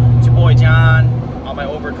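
Road and engine noise inside a moving car's cabin, under a man's voice. A loud low steady hum cuts off suddenly about a second in, and the cabin noise carries on more quietly.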